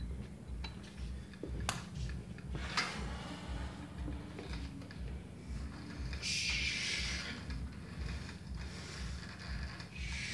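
Gym cable machine worked by hand: the cable runs over its pulleys and the weight stack rises and falls as a bar is pulled down, with mechanical clicks and creaks. There is a sharp click about two seconds in and a hissing rush about six to seven seconds in.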